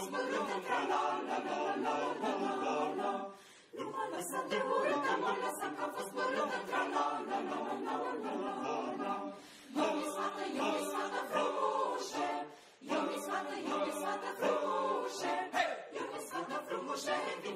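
Mixed choir of men and women singing a cappella, in phrases broken by short pauses about three and a half, nine and a half and twelve and a half seconds in. It is a choral arrangement of a Romanian folk song from Maramureș.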